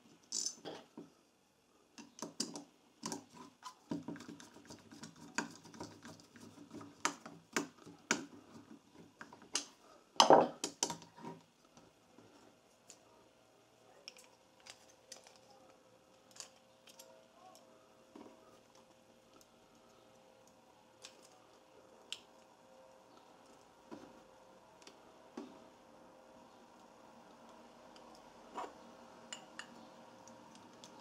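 Small metal carburetor parts clicking and knocking as a small-engine carburetor is reassembled by hand. The clicks come thick and fast over the first ten seconds or so, with the loudest knock about ten seconds in, then thin out to a few faint clicks.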